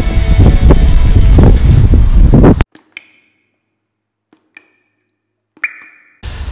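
Loud, rough rumble of wind buffeting an outdoor camera microphone, cut off abruptly about two and a half seconds in. Then near silence with three faint, short ringing pings.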